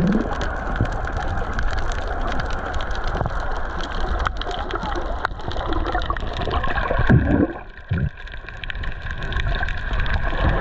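Underwater sound picked up by a snorkeler's submerged camera: a steady churn of water and bubbling with many small crackling clicks. It dips briefly about three-quarters of the way through.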